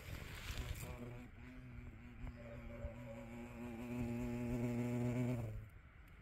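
Yellow-legged hornet (Vespa velutina) buzzing in flight close by: a steady, low wing hum that grows louder and then stops suddenly near the end.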